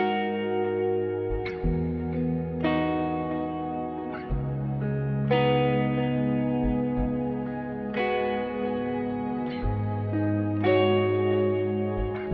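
Harley Benton Amarok 6 baritone electric guitar with active EMG pickups, played clean through echo and chorus effects. Slow picked chords over deep low notes, a new chord struck every second or two and each left to ring out.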